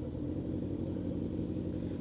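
Motorcycle engine idling steadily at a stop, a low even rumble.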